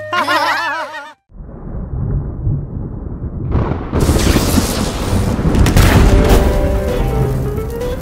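Cartoon thunderstorm sound effects: after a short break, a low rumble builds, then a sudden thunderclap about four seconds in is followed by a loud, steady rush of noise. Background music with a melody comes back in during the last couple of seconds.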